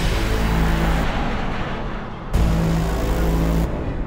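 Background music over the loud rushing noise of a car driving past, heard in two bursts. The second burst starts about two and a half seconds in and cuts off abruptly near the end.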